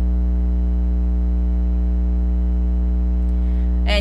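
Steady low electrical hum with a buzz of evenly spaced overtones, like mains hum.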